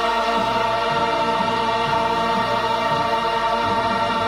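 A song with sung voices holding one long, steady note or chord over the music, as at the close of the anthem.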